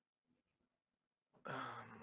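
Near silence, then about a second and a half in a man lets out a breathy, drawn-out 'um' as he starts to speak.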